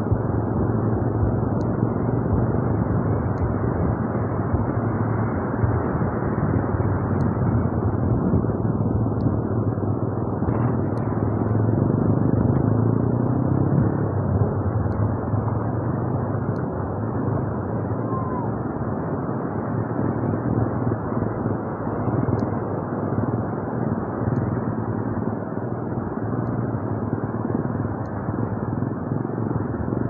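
Steady noise of ocean surf breaking and washing up the beach, without a break.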